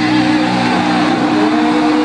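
Live metal band in a large arena holding a sustained, distorted electric-guitar chord, with one note gliding slowly upward in the second half, heard from among the audience.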